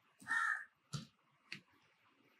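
Two sharp computer-keyboard keystrokes about a second and a second and a half in, as code is typed. Just before them comes the loudest sound: a single harsh call about half a second long, from outside the keyboard's sound.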